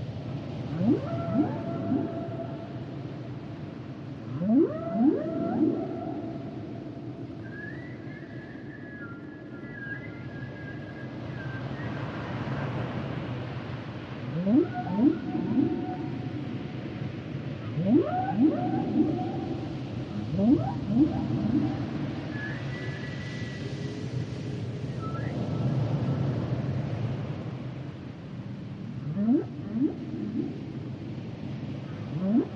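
Humpback whale song: groups of two or three quick rising whoops come every few seconds, with two long, high, held tones in between, about a third of the way in and again near three-quarters. A low rumble runs beneath the calls throughout.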